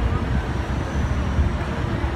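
City bus engine running close by with a steady low rumble, amid street traffic.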